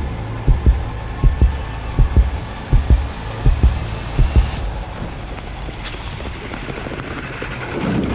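Heartbeat sound effect: pairs of low thumps repeating about every three-quarters of a second, over a hiss that rises and cuts off suddenly about halfway through. After that only a quieter, steady low rumble remains.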